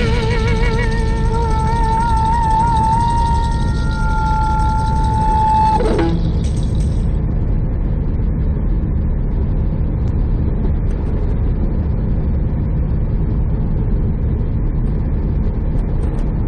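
A song ends about six seconds in on a held, wavering note. After that there is only the steady low rumble of a semi truck cruising at highway speed, engine and tyre noise heard from inside the cab.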